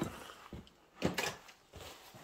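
A sharp knock about a second in, with a fainter click before it and another near the end: hard objects being handled and set down on a wooden workbench.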